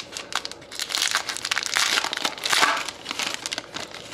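Foil card-pack wrapper being opened and crinkled by hand: a run of crackling and small clicks, loudest from about one second to nearly three seconds in.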